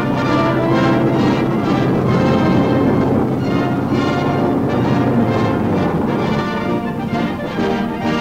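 Orchestral music with brass, playing loud and continuous.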